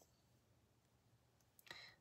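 Near silence: quiet room tone, with one faint, short sound near the end.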